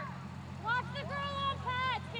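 High-pitched shouted calls from voices across a floodlit field hockey pitch, a few short calls starting about two-thirds of a second in, over a steady low hum.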